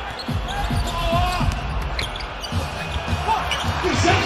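A basketball dribbled on a hardwood court, with a run of low thuds several times a second, under faint voices on the court.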